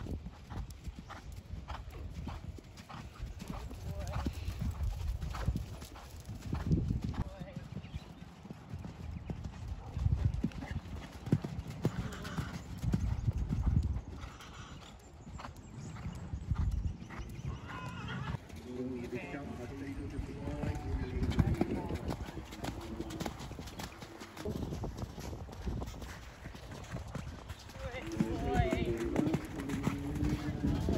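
Thoroughbred horse cantering on an arena's sand surface: repeated thudding hoofbeats, with voices heard in the middle and near the end.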